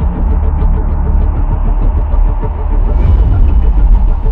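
Channel-logo intro sound design: a loud, steady deep rumble, with a thin hiss joining about three seconds in.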